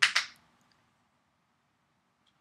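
Lips smacking together twice in quick succession right at the start, pressing in freshly applied red lipstick.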